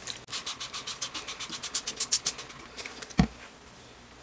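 Hand spray bottle spritzing the soap embed in quick pumps, a fast train of short hissy sprays about eight a second. Then a single thump near the end.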